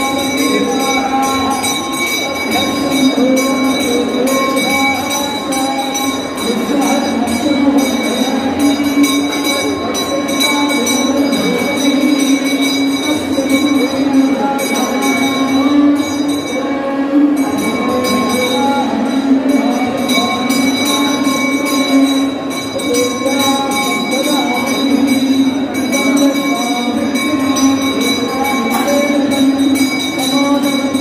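A steady drone held throughout, with a wavering melodic line, chant or reed, moving above it, as in South Indian temple music.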